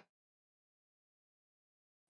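Silence: the audio drops out completely between two stretches of speech.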